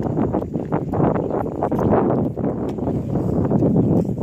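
Wind buffeting the microphone: a loud, uneven rush that rises and falls throughout.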